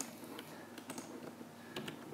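A few scattered light clicks from a computer keyboard, over a faint low hum.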